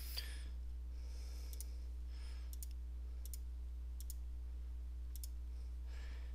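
Computer mouse clicking, about half a dozen short, sharp clicks spread across a few seconds as dropdown menu items are chosen, over a steady low electrical hum.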